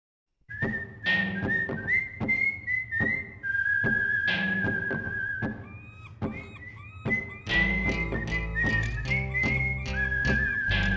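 Instrumental song intro: a whistled melody, a single pure tone stepping and gliding, over a rhythmic backing with regular sharp strikes. A deeper bass part joins about three-quarters of the way through.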